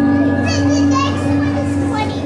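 Children's voices chattering and calling out in an audience, with high-pitched calls from about half a second in, over a steady hum.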